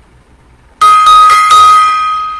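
Small brass tabletop gong struck four times in quick succession about a second in, then ringing on a high steady note that slowly fades.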